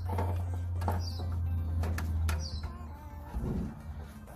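Background music with a steady low bass note that drops away a little past halfway. Over it come a few light clicks as wiring is fished through the hatch's licence-plate light opening, and two short high chirps, about a second in and again past two seconds.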